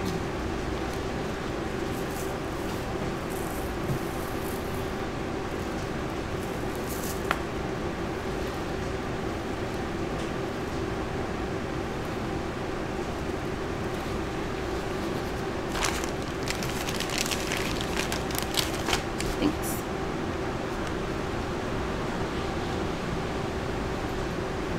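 Steady low hum of room background noise, like an air conditioner or fan, with a cluster of light clicks and crackles about two-thirds of the way through.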